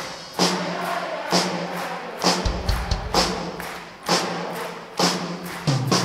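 Live band music with no lead vocal: a heavy percussion beat strikes about once a second, each hit carrying a bright high splash, over a sustained band backing.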